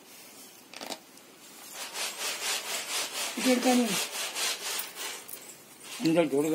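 Quick, rhythmic rubbing strokes of cloth, about four a second, as a cloth bandage is wound and rubbed around a sheep's fractured leg. A short, low voice-like call sounds midway.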